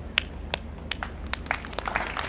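Scattered hand claps: about seven sharp, irregularly spaced cracks over a steady low hum.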